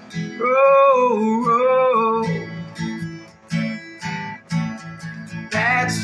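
Acoustic guitar strummed, with a man singing one long held note over it for the first two seconds. Then about three seconds of guitar strumming alone, and the voice comes back in near the end.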